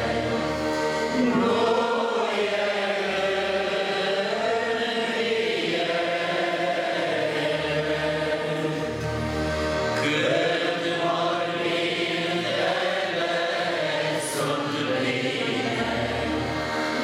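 A group of mostly men's voices singing a slow religious hymn together from hymnbooks, in long held phrases, with a new phrase starting about ten seconds in.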